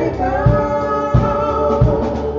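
Live gospel worship music: a woman's voice holding a long sung note over keyboard accompaniment, with a steady drum beat thumping about every two-thirds of a second.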